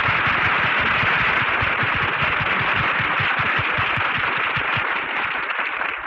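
Studio audience applauding, heard on an old 1940s radio broadcast recording; it dies down near the end.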